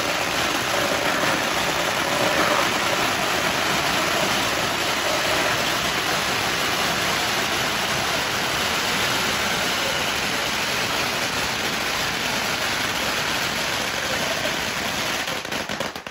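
Long strings of red firecrackers laid on the road going off in one continuous, dense crackle of rapid bangs, stopping suddenly at the very end as the strings burn out.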